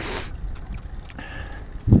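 Wind on the microphone and a low road rumble from a bicycle rolling along pavement, with a short hiss at the very start.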